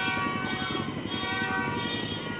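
Motorcycle engine running, its rapid firing pulses heard as a low chatter with steady whining tones above.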